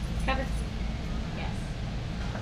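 Steady low rumble of a large store's background noise, with a brief, faint high-pitched voice about a quarter second in.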